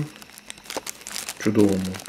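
A small clear plastic zip-lock bag crinkling with light crackles as fingers turn the coin sealed inside it. The crinkling gives way to a man's voice near the end.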